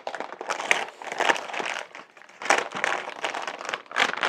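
Metallic anti-static bag crinkling as a graphics card is lifted out of its box in the bag and handled. It comes as an irregular string of crackles, with louder crinkles about two-thirds of a second in, around a second in, and again about halfway through.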